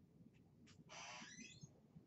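Dry-erase marker drawing lines on a whiteboard: a brief tick, then a high scraping squeak of under a second around the middle.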